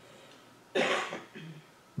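A person coughing once, a short harsh cough about three-quarters of a second in, followed by a brief, much fainter throat sound.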